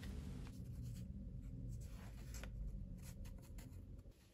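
Quiet handling sounds of a paper bookmark and cord being worked by hand: light rustling and small scattered ticks over a low steady room hum.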